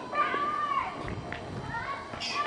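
A child's high-pitched, drawn-out wordless cry, held for under a second near the start and sliding a little in pitch, then fading into fainter murmurs.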